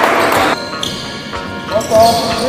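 Background music that cuts off abruptly about half a second in, followed by the live sound of a basketball game in a gym: the ball bouncing and players' voices.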